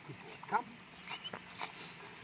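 Samoyed dog making a few short whining sounds, the loudest, rising in pitch, about half a second in.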